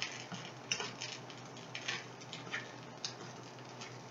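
Light, irregular clicks and ticks of a metal fork stirring egg scramble in a small stainless steel pan, a few times a second.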